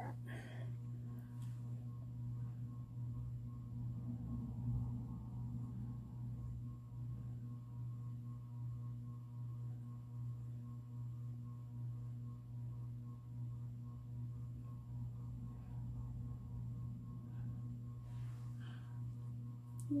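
A steady low hum with fainter higher tones above it, unchanging throughout.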